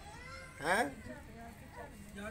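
A cat meowing once, a short loud call about two-thirds of a second in, with quieter voices around it.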